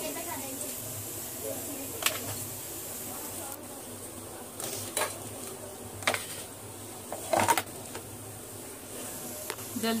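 A metal spoon clinking and tapping against a bowl and platter while yogurt is spooned over fried gram-flour dumplings: a few scattered clinks, then several in quick succession about seven seconds in, over a steady low hum and faint hiss.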